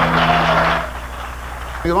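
Studio audience applause with a held falling cry, over the band's last sustained chord as it dies away in the first second; a man starts speaking at the very end.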